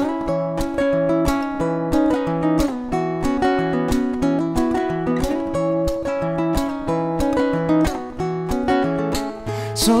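Acoustic guitar played fingerstyle in a steady slap pattern: percussive hits on the strings mixed in with the picked chords, over a low bass note repeating about twice a second.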